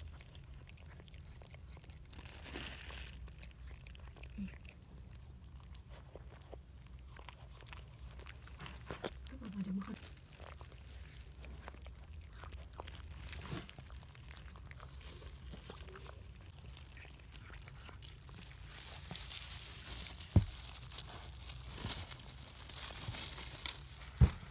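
Toy poodle mother chewing and licking as she eats the remains of the amniotic sac after whelping a pup: faint, irregular chewing and clicking sounds. A few sharp snaps stand out near the end.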